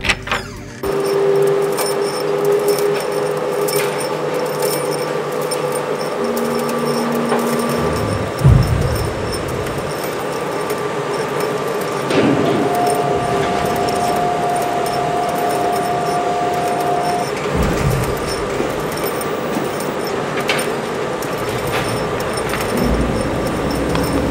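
A song cuts off abruptly in the first second, giving way to factory machinery running: a steady mechanical hum with several held whining tones, one higher whine lasting a few seconds in the middle, and occasional metallic clanks and knocks.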